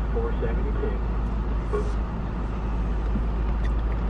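Steady low rumble of a car idling, heard from inside the cabin, with faint speech in places.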